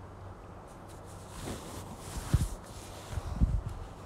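A steam iron being pushed and pressed over a boned corset bodice on a wooden table: fabric rustling from about a second and a half in, then two dull thumps about a second apart as the iron and hand press down.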